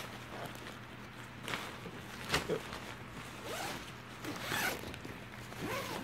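Zipper on a nylon packing cube being pulled open in several short strokes.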